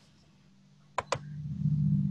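Two quick mouse clicks about a second in, then a low steady hum that grows louder.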